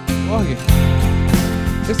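Arranger keyboard playing a factory accompaniment style: strummed acoustic guitar over drums and bass, a guitar sound that is praised as beautiful.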